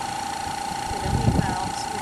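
Small plug-in tire-inflator air compressor running with a steady, even whine, pushing air down the line to drive a homemade PVC airlift pump that is lifting well water about 25 feet.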